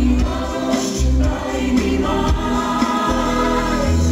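A Greek-style pop song performed live: several singers over a band, with a steady beat.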